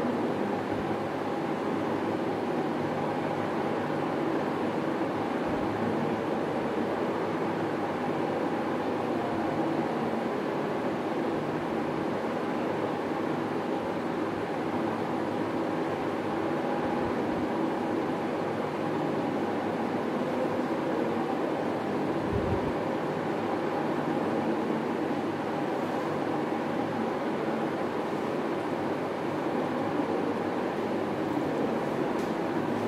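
A steady, unchanging hum with a hiss over it, like a running machine.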